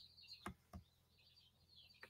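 Near silence: faint room tone with a few faint short clicks in the first second.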